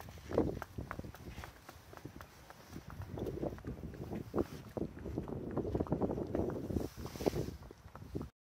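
Ponies' hooves clip-clopping on concrete at a walk: a string of irregular knocks as they are led along.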